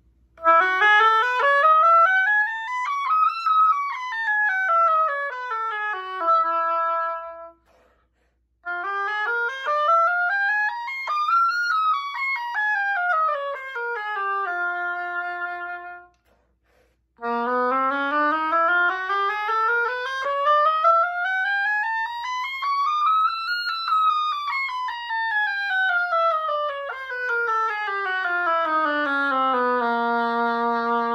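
Solo oboe playing three scales, each climbing step by step and running back down to a held final note, with short breaks between them. The third scale is the longest: it starts lower and climbs higher than the first two.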